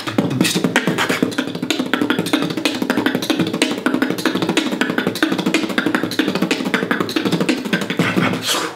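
Fast, dense beatboxing: a rapid, unbroken stream of mouth-made drum clicks and hi-hat sounds over a continuous low hum.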